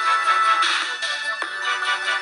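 Background music with steady tones and a regular beat.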